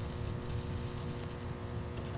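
Faint hissing sizzle of flux and solder melting under a soldering iron tip on a crimped wire terminal, strongest in the first second, over a steady low hum.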